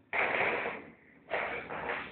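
Woven plastic shopping bag rustling and crinkling in two bursts about a second apart as a kitten climbs into it.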